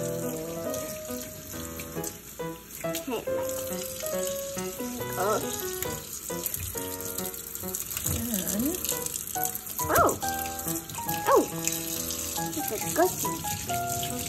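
Kitchen faucet running steadily into a stainless steel sink, the stream splashing over a mop pad and rinsing hands, with background music playing throughout.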